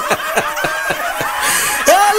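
Laughter: a quick run of short 'ha' bursts, about six a second, each falling in pitch, with a breathy hiss near the end.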